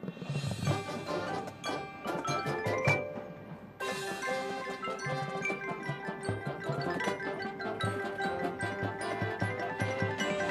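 Marching band music: mallet percussion such as marimba and glockenspiel with drum strikes, joined about four seconds in by a held chord that carries on under the struck notes.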